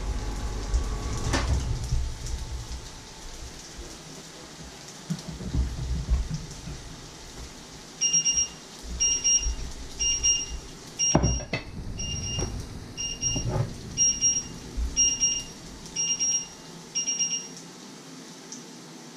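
An electronic kitchen-appliance beeper sounding about once a second, ten short beeps starting about halfway through. Partway through, a hot glass dish is set down on a wooden board with a knock.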